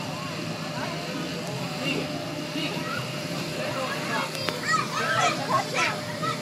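Children shouting and squealing as they jump in an inflatable bounce house, over a steady hum from its air blower. The voices get louder and busier near the end.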